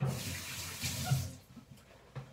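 Kitchen tap running in a sink for about a second and a half, then turned off.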